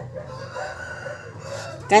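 A faint, drawn-out pitched call in the background, lasting about a second and a half.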